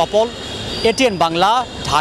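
A man speaking to the camera in the street, over a steady background of traffic noise.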